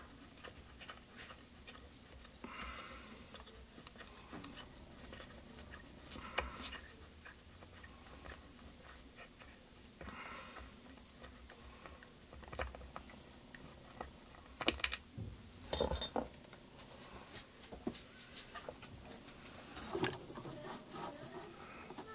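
Faint, scattered clicks, taps and scrapes of hand tools and small metal parts as screws on a vacuum pump are tightened down, with a few sharper clicks in the second half.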